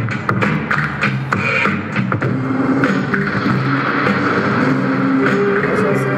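A man beatboxing: rhythmic mouth clicks and vocal percussion, giving way about two seconds in to held vocal tones that step up and down in pitch.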